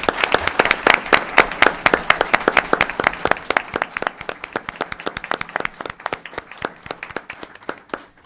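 Audience applause: many people clapping, loud at first and thinning out over the last few seconds.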